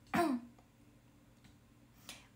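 A woman clears her throat once, briefly, at the very start, the pitch dropping as it ends. The rest is quiet room tone with a faint steady hum.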